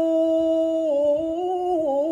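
An adult man's voice in melodic tilawah Quran recitation, in the mujawwad style, drawing out one long ornamented vowel: steady at first, then rising a little in small steps and sinking back down near the end.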